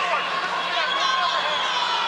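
Indistinct voices shouting over the crowd noise of a boxing arena, with a steady low hum underneath.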